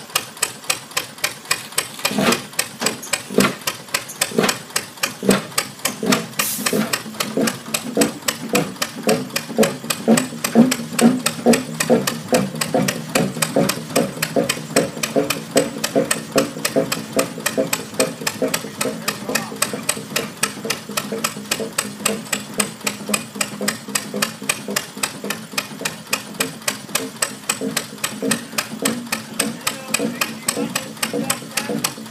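Fairbanks Morse Y vertical diesel engine (75 hp) running, firing in a steady train of sharp, even beats about three to four a second. A brief hiss cuts in once, about six seconds in.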